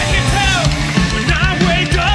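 Rock band playing live: distorted electric guitar, electric bass and a drum kit together, with a male voice singing over them.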